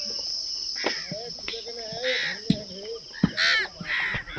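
A steady high-pitched insect drone, like crickets, with crows cawing twice, about two seconds in and again near the end.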